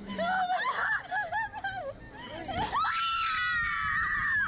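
Two young women laughing, then about three seconds in one breaks into a long, high, sustained scream as the Slingshot reverse-bungee ride launches them skyward.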